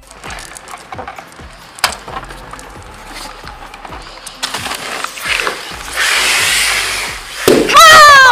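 Soda bottle erupting after Mentos drop into the Coca-Cola: a fizzing foam jet hisses out of the neck, building from about halfway through and loudest near the end. Children shriek loudly in the last half-second.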